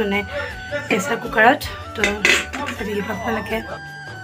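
Kitchen dishes and utensils clinking and clattering, with a couple of sharp clinks around the middle, over background music with held notes.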